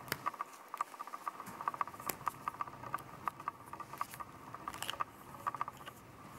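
A pen being handled and twisted apart: irregular small clicks and light taps from its plastic and metal parts, in quick clusters.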